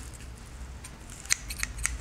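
Scissors cutting through a sheet of cardboard, with a quick run of short, sharp snips in the second half.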